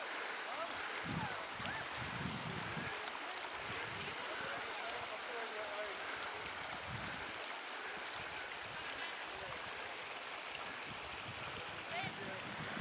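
Small mountain stream trickling: a steady, even rush of water, with a few soft low thumps.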